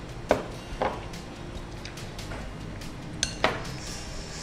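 A steel mixer jar and a spoon clinking against a glass mixing bowl as marinade is poured over chicken pieces and stirred in. There are about six sharp clinks at irregular intervals, and one near the end rings briefly.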